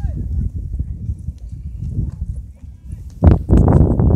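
Wind buffeting the microphone: an uneven low rumble that turns into loud, gusty blasts about three seconds in.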